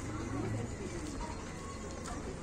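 A pigeon cooing, a low call in the first second.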